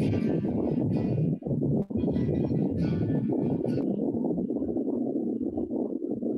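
Acoustic guitar being strummed, heard over a video call's audio.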